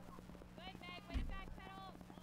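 Faint talking in a quieter voice, with a low thump about a second in, over a steady low hum.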